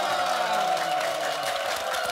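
A studio audience clapping, with a woman's voice holding one long drawn-out vowel over it.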